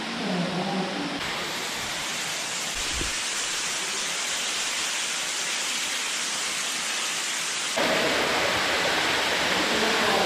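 Steady rush of water in a cave, an even hiss without rhythm, growing louder about eight seconds in, with a single dull thump about three seconds in.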